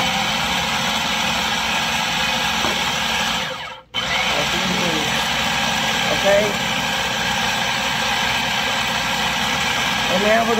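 Electric food processor running steadily on its low setting, churning flour, salt and fresh spinach while eggs go in through the feed tube. Its sound dies away a little past three seconds in and comes back abruptly about four seconds in.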